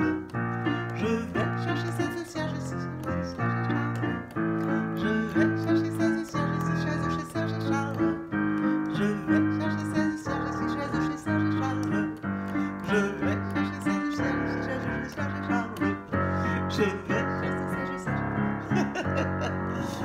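Yamaha digital piano playing the accompaniment for a vocal warm-up: a short pattern of chords, repeated over and over at a brisk, even pace.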